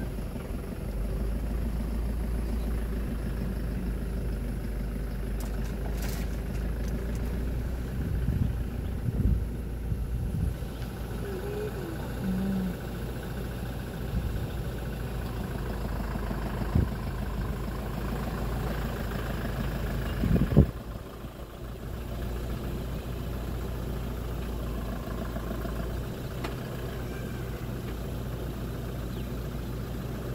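A motor vehicle's engine idling with a steady low hum, with a few faint knocks and one sudden loud knock about two-thirds of the way through.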